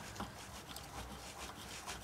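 Height gauge scriber scratching a layout line through marking ink on a machined cast iron engine cylinder: a faint, scratchy rubbing with many small ticks.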